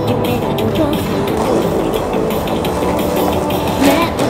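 Amplified electronic pop backing track with a steady beat; a woman's sung voice comes in near the end.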